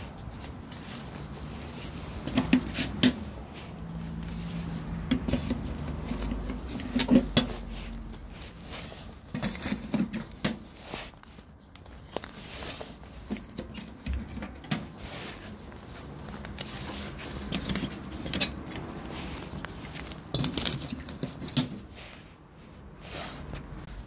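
Metal letterbox flaps clacking and rattling open and shut, one after another, as cards are pushed through a bank of apartment mailboxes. The clacks come irregularly, a few every second or two.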